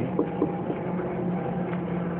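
A steady low mechanical hum with a constant pitch, and a couple of faint short ticks about a quarter and half a second in.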